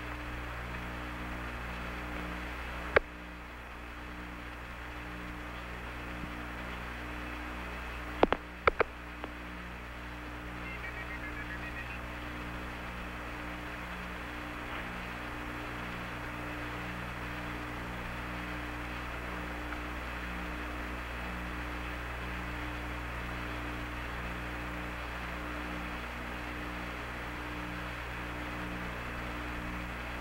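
Steady hiss and low hum of the Apollo 11 air-to-ground radio transmission channel, with no voices, broken by a sharp click about three seconds in and a few more clicks around eight seconds in.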